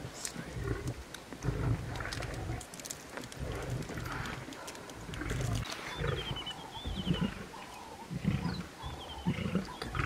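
Lions growling low in repeated short bursts while feeding together at a kill, the sound of a pride jostling over the carcass.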